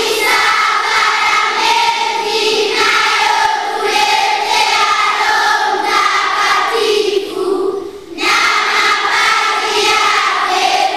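A large group of children, the confirmation candidates, singing together as a choir, with a brief pause for breath about three-quarters of the way through.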